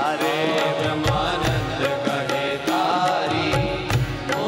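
A man singing a Gujarati devotional kirtan in a melismatic, chant-like line. It is set against steady hand-drum strokes, with deep drum thumps about a second in and near the end.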